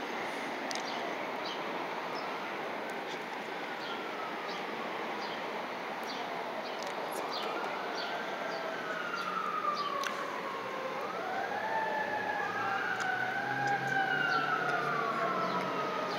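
Fire truck siren wailing, its overlapping tones rising and falling in pitch and growing louder as the truck approaches.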